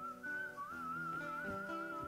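Soft background music: a single high melody line with a wavering pitch, held over sustained lower notes.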